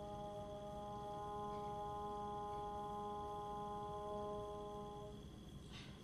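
Trombone holding one long final note, steady in pitch, fading out about five seconds in.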